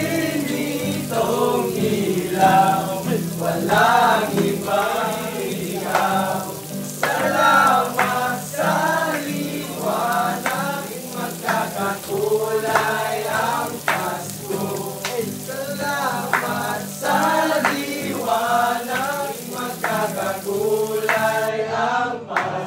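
A group of young men singing a Christmas song together, with many voices at once and the line broken into short sung phrases. A steady hiss of rain runs underneath.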